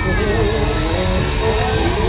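Loud live R&B band and singers performing, with a heavy bass that comes in just before and runs throughout, voices singing over it, and a crowd.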